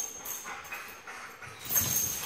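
A Belgian Malinois and another dog playing on a concrete kennel floor. Their play sounds are quiet, then grow louder near the end.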